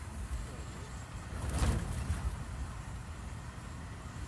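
Steady low road and engine rumble of a moving car, heard from inside the cabin. About a second and a half in there is a brief, louder rush.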